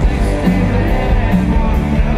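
Rock band playing live: electric guitars, bass guitar and drums with a steady beat of cymbal strikes about twice a second, and a man singing.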